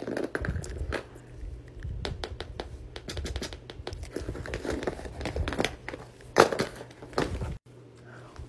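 Plastic fidget toys, among them a ribbed pop tube, being handled and set down on a ring binder: crinkling and rustling with scattered clicks and taps, loudest about six and a half seconds in, then cutting off suddenly near the end.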